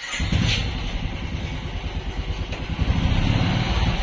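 Royal Enfield motorcycle's single-cylinder engine catching suddenly and running with a rapid low beat, getting louder about three seconds in.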